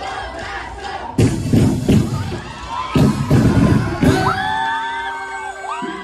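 Crowd shouting and cheering, with several loud, short bursts of shouting between about one and four seconds in. Music with long held notes then begins a little after four seconds.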